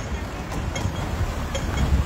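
Busy city street ambience: a steady low traffic rumble with wind buffeting the microphone, swelling near the end.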